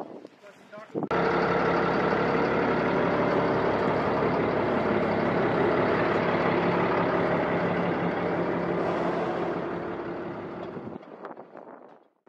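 Armored vehicle's diesel engine running steadily close by. It starts abruptly about a second in and fades away shortly before the end.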